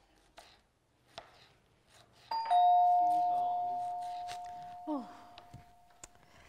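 Two-tone electronic doorbell chime, a higher ding then a lower dong, ringing out and fading over about two and a half seconds, a couple of seconds in.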